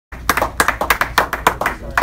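A few people clapping in a small room, distinct claps about six or seven a second.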